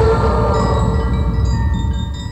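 Film soundtrack: scattered high, bell-like chime tones ringing over a continuous low rumble, growing slightly quieter toward the end.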